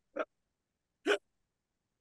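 A person's voice in two brief bursts about a second apart, with dead silence between them, as on a noise-gated video call.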